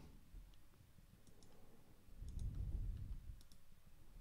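Faint, scattered clicks from a laptop being worked, over quiet room tone.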